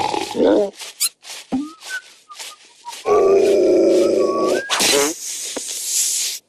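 Cartoon soundtrack with a bulldog character's growls and grunts, interspersed with short comic sound effects. The loudest part is a long growling stretch in the middle. Near the end comes a burst of hissing noise.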